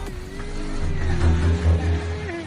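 Motorcycle engines running in street traffic: a low throbbing rumble that grows stronger about a second in, over a steady hum.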